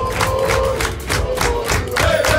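A group of footballers clapping in quick unison, about four claps a second, while chanting together on one long held note that sinks slightly.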